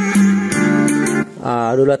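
Guitar music playing through a pair of Tannoy speakers from a small amplifier board, stopping just over a second in. A man starts talking near the end.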